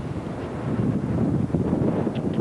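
Wind buffeting a camcorder's microphone: a steady, gusting low rumble.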